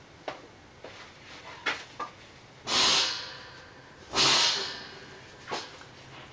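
A person breathing close to the microphone: two loud breaths about half a second each, near the middle, with a few light clicks around them.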